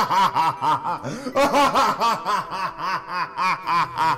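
A man laughing: a long run of rhythmic "ha-ha" pulses, about three or four a second, with a brief break about a second in.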